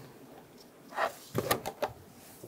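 Light handling clicks and knocks of a small screw being set by hand into the plastic intake air duct: a soft knock about a second in, then a quick run of sharp clicks.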